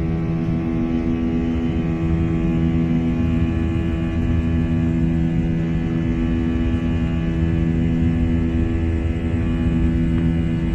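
Airliner's engines heard from inside the cabin in flight: a steady drone made of several held tones over a low rumble, unchanging throughout.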